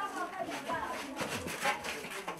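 Low, indistinct voices from a film soundtrack played through a lecture hall's speakers, with a few soft clicks in the second half.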